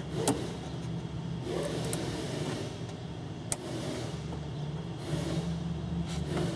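Steady low hum of a vehicle engine idling, with two sharp clicks, one just after the start and one about three and a half seconds in.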